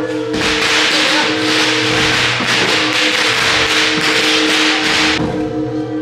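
Procession music with a steady held tone, overlaid from about half a second in by a loud, dense burst of rapid crashing that stops about five seconds in.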